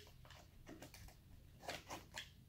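A few faint scrapes and light clicks of fingers and a small cutter working at the tape seal of a cardboard box, more of them near the end.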